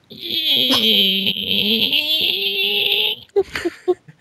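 A high-pitched sound effect lasting about three seconds, played as a gag, with a man laughing over it.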